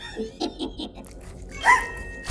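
Small cartoon creature's animal sounds: a few short yips in the first second, then a pitched call that bends in pitch near the end.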